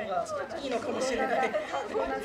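Several people talking and calling out over one another: group chatter.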